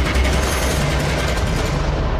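Television news bumper music: a loud, dense sting with heavy bass and a rushing noise on top, the high end thinning out near the end.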